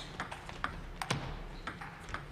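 Table tennis ball clicking off the paddles and the table during a doubles serve and rally: about half a dozen sharp, irregular ticks.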